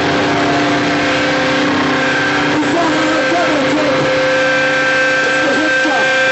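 Loud electric guitar and amplifier feedback from a live hardcore band, several tones held steady without a beat, with voices shouting over the top.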